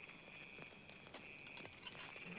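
Faint, steady chirring of crickets, a night ambience with a fine rapid pulse, with a few soft clicks scattered through it.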